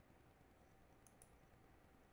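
Near silence: faint room tone with two soft clicks close together about a second in, from a computer mouse being clicked.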